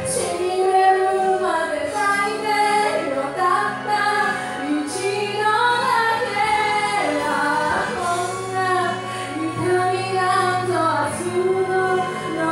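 A woman singing a slow song into a microphone over instrumental accompaniment, holding long notes with a wavering vibrato.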